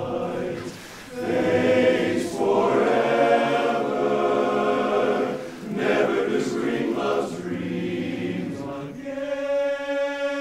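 Men's barbershop chorus singing a cappella in close harmony, with short breaks between phrases about a second in and near the middle, settling into a long held chord near the end.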